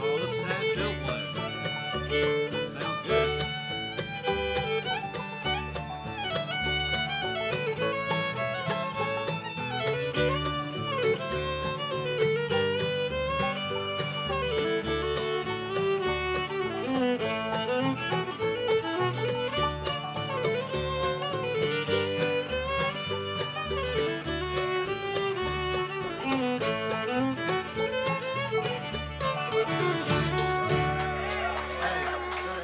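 Live acoustic bluegrass band playing an instrumental passage with the fiddle carrying the melody, backed by banjo, mandolin, acoustic guitar and upright bass.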